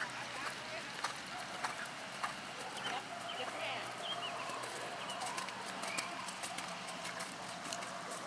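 Hoofbeats of a horse cantering and trotting on sand arena footing, a regular beat, with a few bird chirps in the middle.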